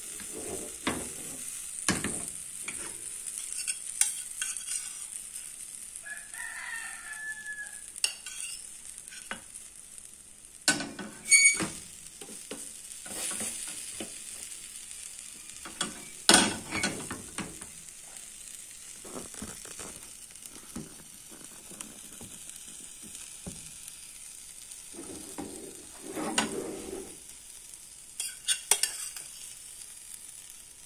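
Diced sweet potato and apple sizzling in a frying pan, stirred with a metal spoon that scrapes and knocks against the pan, the sharpest knocks about eleven and sixteen seconds in. A short call sounds in the background about six seconds in.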